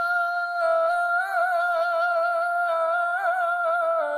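An unaccompanied male voice humming one long, steady note for a naat (Islamic devotional song), with small wavering ornaments twice along the way.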